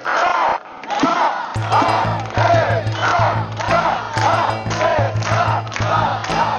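A man leads a rhythmic shouted protest chant, about two syllables a second, with a crowd around him. Background music with a steady low bass note comes in about a second and a half in.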